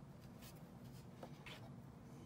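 Faint rasps of sewing thread being drawn by hand through a felt plush toy: two short strokes about a second apart, over a low steady hum.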